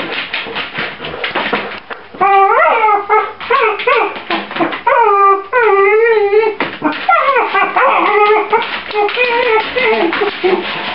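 Puppy whining and howling: a run of wavering cries that rise and fall in pitch, strongest from about two seconds in to about seven seconds, with looser cries continuing to the end.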